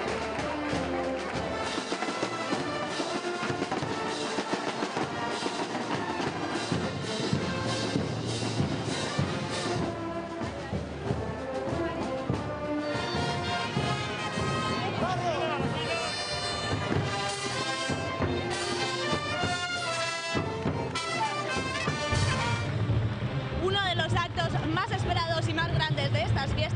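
Brass band music playing continuously, with brass and drums.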